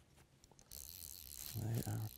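Fly reel clicking faintly as a hooked trout is reeled in, followed by a steady hiss and a brief voice near the end.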